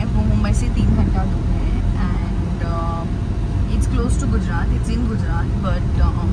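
Steady low road and engine rumble inside a moving car's cabin, with a woman's voice talking over it.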